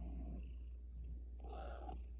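Domestic cat purring steadily while dozing, close up. A brief soft sound comes about one and a half seconds in.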